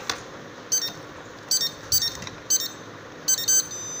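Electronic beeps from an RFID motorised door lock's buzzer, about six short ones spaced unevenly, as the programming-mode code is keyed in on its infrared keypad remote, then a longer steady tone near the end. A single click comes right at the start.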